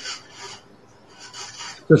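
A few short, faint rustling or rasping noises during a pause in speech, followed near the end by a man's voice starting again.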